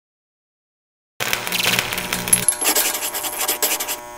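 Channel logo sound effect: silence for about a second, then a busy rattling burst of many rapid clicks over a low held musical tone, with a thin high whistle partway through.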